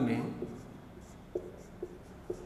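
Marker pen writing on a whiteboard in a series of short, separate strokes.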